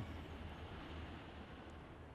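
Faint, steady background noise with a low hum underneath.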